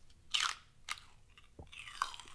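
A person bites into a crisp green vegetable with a loud crunch, then crunches on it a couple more times while chewing.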